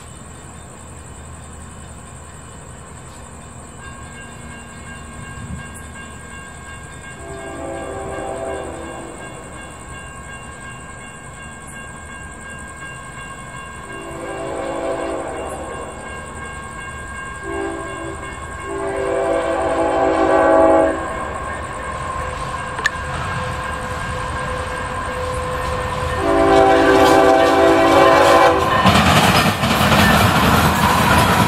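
CSX freight locomotive's multi-chime air horn sounding the grade-crossing signal as the train approaches: two long blasts, a short one and a long one, then another long blast, growing louder. Near the end the locomotive's engine and wheel rumble rise sharply as it passes close by.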